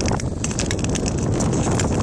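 Thin new black ice (kraakijs) on a still lake, cracking and creaking under skates gliding over it: a dense run of sharp cracks and clicks over a low rumble.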